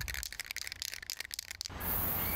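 Aerosol spray-paint can shaken, its mixing ball rattling in quick clicks, then a steady hiss of paint spraying from the nozzle starting near the end.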